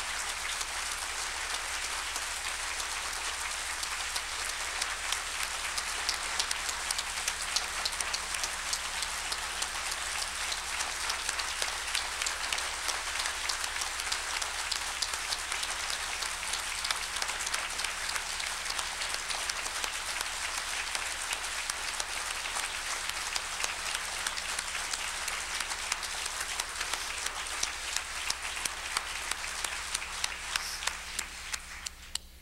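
Large audience applauding at length in a hall, a dense continuous clapping that thins to scattered individual claps near the end.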